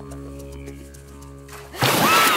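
Held background music notes, then about 1.8 s in a sudden loud splash as a small crocodile lunges out of shallow water.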